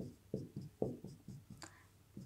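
A marker writing on a whiteboard: about eight short, separate strokes in two seconds as the kanji 日本 are drawn stroke by stroke.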